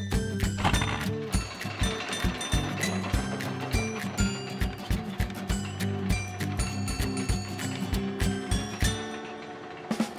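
Upbeat cartoon background music over a steady, rapid clicking rattle: a roller-coaster car being pulled up the lift-hill track. The music and clatter thin out near the end.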